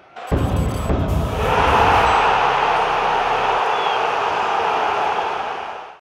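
Channel outro sting for an animated logo: a sudden deep hit just after the start, then a sustained rushing swell of noise that holds and fades out at the very end.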